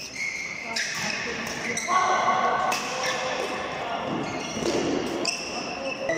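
Badminton doubles rally: shuttlecock struck sharply by rackets several times, with players' shoes squeaking on the court mat, echoing in a large hall.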